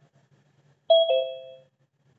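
A two-note electronic chime, ding-dong, falling from a higher note to a lower one about a second in and fading out within about a second.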